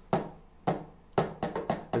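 Sharp percussive taps beating out the paso redoblado, the double-time military march drum beat: two spaced strikes, then quicker ones closing together near the end.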